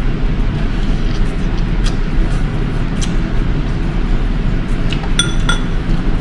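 Close-up eating sounds: noodles being eaten and chewed over a steady low background, with a few faint clicks. About five seconds in, a single short ringing metallic clink of tableware.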